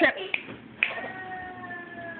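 A dog howling in the background: one long, steady-pitched howl starting about a second in, sinking slightly near its end.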